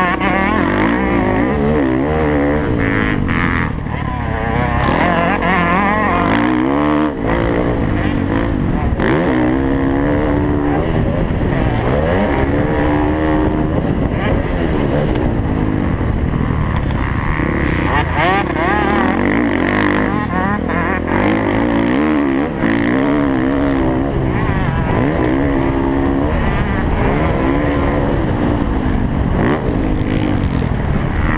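Dirt bike engine heard from on board, revving up and easing off over and over through the gears.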